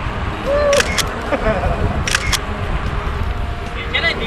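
Wind and road rumble on a camera microphone riding along on a bicycle, with two pairs of sharp clicks, about one second and two seconds in, and faint voices of other riders.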